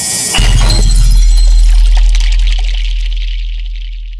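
Cinematic end-card sound effect: a rising whoosh leads into a sudden deep bass hit with a glassy, shattering shimmer about half a second in. The hit rings on and slowly fades.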